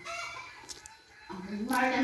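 A rooster crowing, heard under people's voices.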